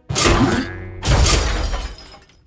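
Two loud crash sound effects about a second apart, like something breaking, over soft background music.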